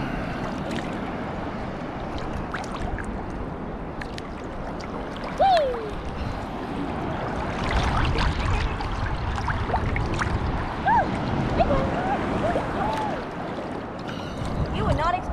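Seawater lapping and sloshing around a camera held at the water surface, a steady wash of noise that grows heavier with low rumbling from about halfway through.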